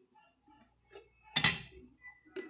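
Plastic tub of hair cream being handled over a plastic bowl: faint light taps, then one sharp knock about one and a half seconds in.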